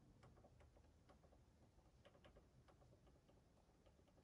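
Near silence with faint, irregular clicks, about three a second, from a TV remote's buttons being pressed to step across an on-screen keyboard.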